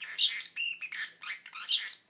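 A parrotlet chirping in a quick run of short, high-pitched calls that stops at the very end.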